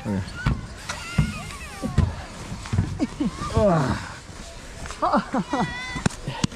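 People's voices talking and calling out in short phrases.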